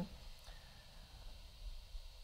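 A pause in speech: faint room tone with low hum and hiss from the recording.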